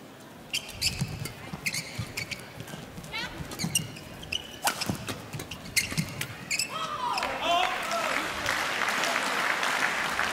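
Badminton rally: sharp racket strikes on the shuttlecock mixed with shoes squeaking on the court floor for about six seconds. From about seven seconds in, an indoor crowd cheers and applauds the point, with a few shouts, growing louder toward the end.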